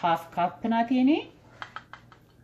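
Speech for about the first second, then two or three light clicks of kitchenware near the end, as a plastic measuring cup is set down and a flour jug is picked up beside a glass mixing bowl.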